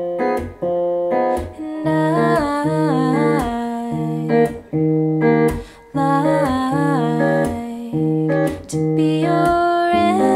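Electric guitar, capoed at the third fret, fingerpicked in a steady arpeggio pattern: a bass note and then three treble strings plucked together, repeated evenly through slow chord changes. A voice sings softly along in places.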